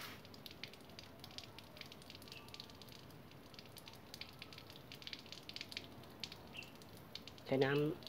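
Faint, irregular crackling and fizzing of freshly watered potting soil mixed with coconut coir. Water is soaking in and driving the air out of the soil in tiny pops, while fingers press the wet soil down.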